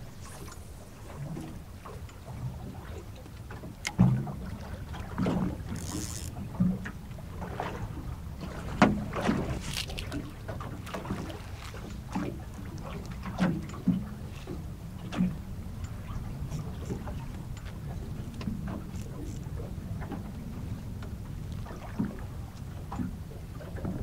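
Water slapping and lapping against the hull of a small drifting boat, with wind rumbling on the microphone. Irregular knocks and slaps come every second or two.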